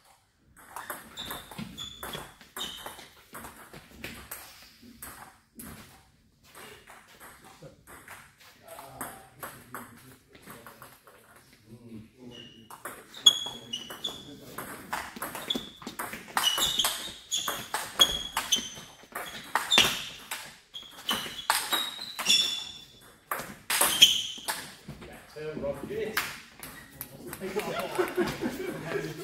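Table tennis ball being hit back and forth, clicking off the paddles and bouncing on the table with a short high ping on each hit. A brief exchange comes near the start, then a long rally of quick hits from about halfway that stops a few seconds before the end, followed by voices.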